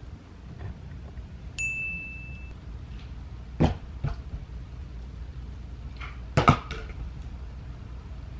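A short, high, ringing ding, then plastic water bottles thrown onto a bed, landing with sharp knocks a little before the middle and again, loudest, about six and a half seconds in.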